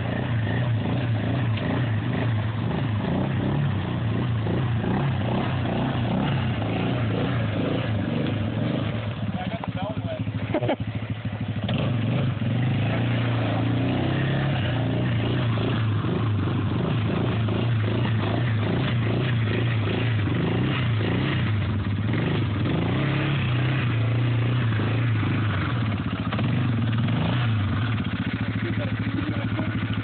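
Yamaha Grizzly ATV's single-cylinder engine running steadily as the quad creeps through deep water, with a brief dip in the engine sound about ten seconds in.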